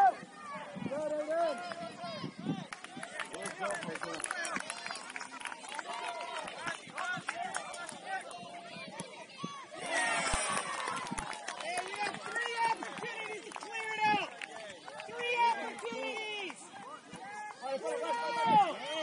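Indistinct shouting and calling from many players and sideline spectators at a youth soccer game, voices overlapping. A louder burst of shouting comes about ten seconds in.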